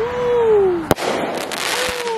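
Consumer firework going off: a falling whistle-like tone for just under a second, then one sharp bang about a second in, followed by a hissing crackle.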